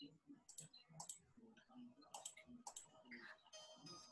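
Faint computer mouse clicks, four or five of them over the first three seconds. Near the end, music with held tones fades in.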